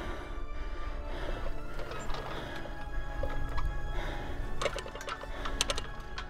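Background music with steady held tones, with a run of sharp clicks in the last second and a half.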